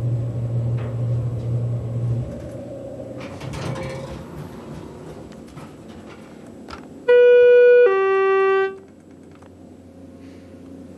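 Schindler elevator: a low running hum that cuts off about two seconds in, then about seven seconds in a loud two-note electronic chime, a higher note followed by a lower one, each under a second.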